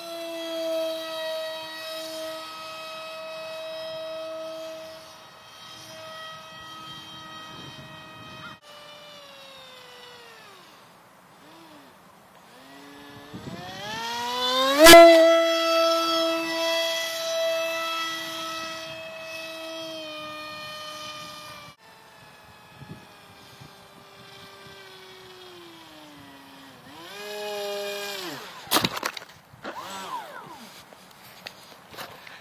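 Grayson Super Megajet v2 electric motor spinning a 6x4 propeller in an RC foam Eurofighter: a high steady whine with many overtones that cuts out, falls in pitch and winds back up several times as the throttle changes. About halfway through the whine climbs steeply to a single sharp crack, the loudest moment.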